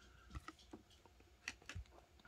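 Faint clicks and taps of trading cards being handled and laid down on a table, four light clicks over two seconds.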